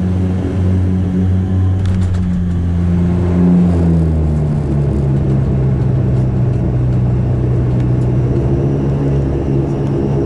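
Saab 340 turboprop engine and propeller droning loudly in the cabin as the aircraft slows after landing, the drone dropping to a lower pitch about four seconds in.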